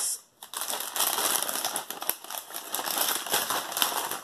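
Plastic cookie bag crinkling and rustling as it is handled and turned over, starting about half a second in after a brief silence.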